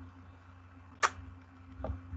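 A single sharp click about a second in, the kind made at a computer while a document is being edited, over a low steady electrical hum, with a fainter tick near the end.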